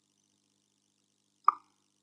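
Near silence, broken by a single short pop about one and a half seconds in.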